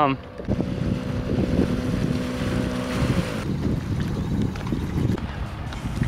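Wind buffeting the microphone, with a boat engine running steadily nearby. Its hum drops in pitch and stops about three and a half seconds in.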